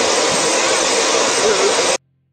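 Steady loud rushing noise of a jet aircraft's engine running close by on the apron, with faint voices under it. It cuts off suddenly at the end.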